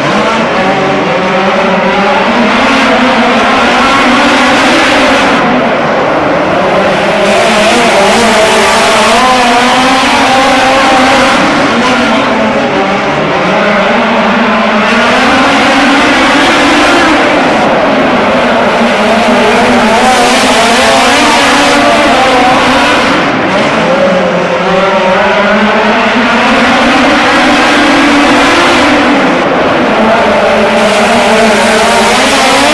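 Two midget race cars' four-cylinder engines running hard, loud and steady, their pitch dipping and climbing again about every five to six seconds, turn after turn.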